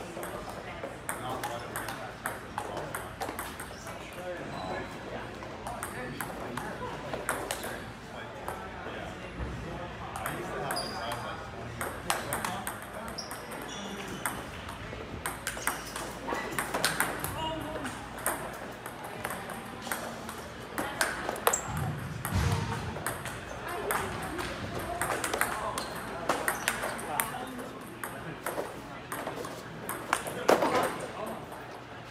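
Table tennis ball clicking back and forth between paddles and table in rallies, many quick hits throughout, with voices chattering in the background.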